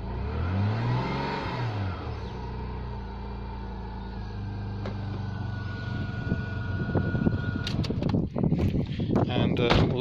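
Rover 45's 2.0-litre quad-cam V6 running just after an oil change: one short rev about a second in, to get the fresh oil circulating, then back to a steady idle. Knocks and handling noises near the end.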